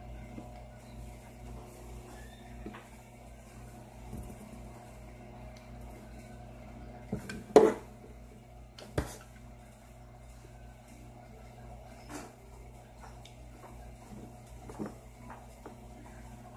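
A steady low hum with a few sharp knocks on a tabletop: the loudest about seven and a half seconds in, another about a second and a half later, and fainter taps near the end.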